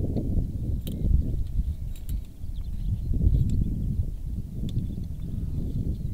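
Wind buffeting the microphone in a gusty low rumble, with a few faint clicks as the metal claw mole trap is handled.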